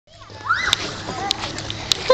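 A short rising vocal sound about half a second in, then a steady rustle of handling noise with three sharp clicks.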